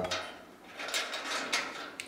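Light scraping and rubbing of metal parts being handled, starting under a second in: a bolted steel bracket and its washer are shifted by hand against the panel.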